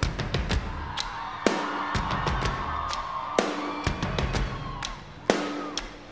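A live rock band playing a song's instrumental intro: sharp drum hits at uneven spacing over a held high tone, growing quieter shortly before the end.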